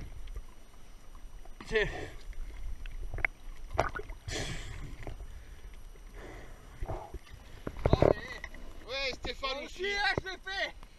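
Water splashing and sloshing against a diver and an inflatable boat as a speared ray is handed up over the side, heard from a camera at the waterline. There are irregular splashes, the loudest about eight seconds in.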